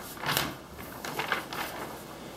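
Sheets of drawing paper rustling as they are waved and handled, a few short swishes.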